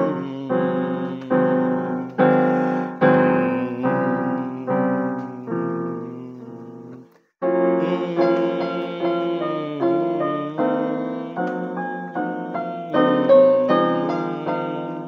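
Piano played slowly, chords struck about every three-quarters of a second and each left to ring and fade. About seven seconds in the sound stops completely for a moment, then the playing resumes.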